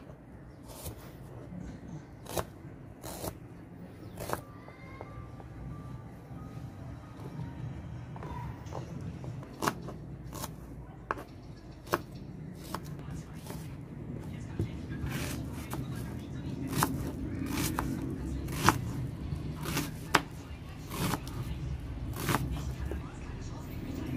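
Kitchen knife slicing shallots, garlic and onion on a plastic cutting board: irregular sharp taps of the blade hitting the board, roughly one a second.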